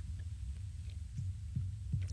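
Low steady hum with a few faint, soft low thumps.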